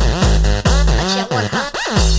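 Electronic dance music with a heavy kick drum whose pitch drops on each hit, about two beats a second. A little over a second in, the bass drops out for a short break, and a rising-then-falling sweep effect leads back into the beat at the end.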